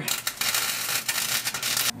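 110-volt flux-core wire welder crackling with a steady hiss as it tacks thin, rusty sheet metal, stopping just before two seconds. The arc is blowing right through the rust.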